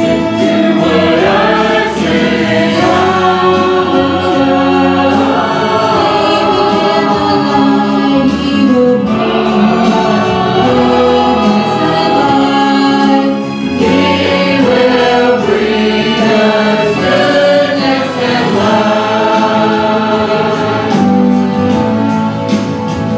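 Church choir of mixed men's and women's voices singing a hymn together, steady and continuous.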